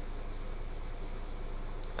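Room tone: a steady low hum with a faint hiss and no other events.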